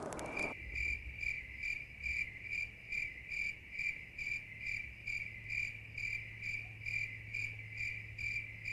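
A high, cricket-like chirp repeating evenly about twice a second, over a low steady hum.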